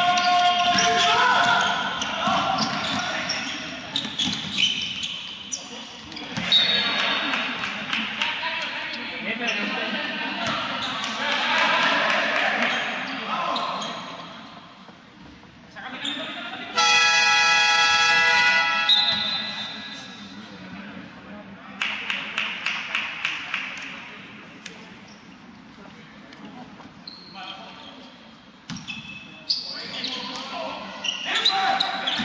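Indoor basketball game in a large echoing hall: players' voices calling out and the ball bouncing on the court, with a steady electronic buzzer sounding for about two seconds partway through and a quick run of ball bounces a few seconds later.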